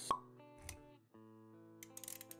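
Intro music with sound effects: a sharp pop just after the start, a short low thud, then held musical notes with a few quick clicks near the end.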